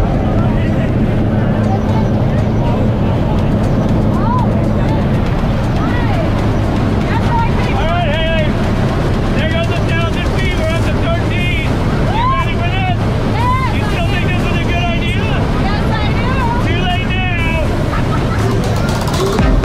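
Steady drone of a small propeller plane's engine and rushing air heard inside the cabin during the climb. In the second half, voices are raised over the engine noise.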